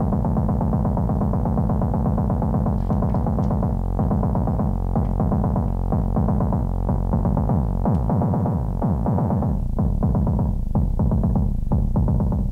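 Make Noise Eurorack modular synth playing a crunchy, low, rapidly pulsing drum sound: a MATHS channel run as an oscillator and frequency-modulating itself, through the QPAS filter and Mimeophone. Near the end it breaks into more separate hits as the knobs are turned.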